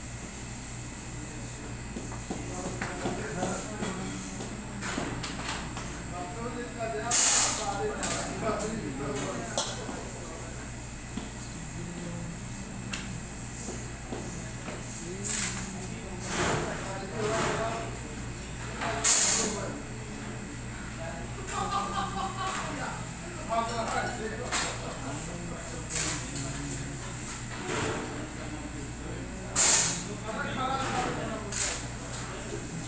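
Indistinct voices over a steady low hum, with three short, loud hissing bursts about twelve seconds apart.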